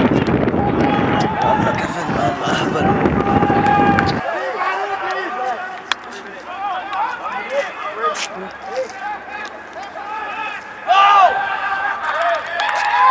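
Voices of players and spectators at a rugby league match, shouting and calling out in many short cries, with a loud shout about eleven seconds in. A heavy low rumble sits under the voices for the first four seconds and then stops abruptly.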